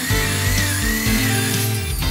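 Background music with guitar, and under it a corded electric drill whining as it bores into the sheet-metal frame of a PC case, its pitch wavering under load and dying away near the end.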